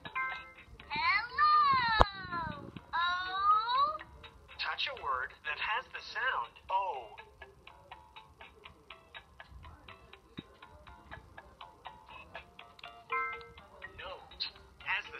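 A LeapFrog Tag reading pen's small speaker plays a short chime as the pen touches a character, then the character's voice in swooping, sing-song tones mixed with music. Quiet, regular ticking at several beats a second follows, and another short chime comes near the end.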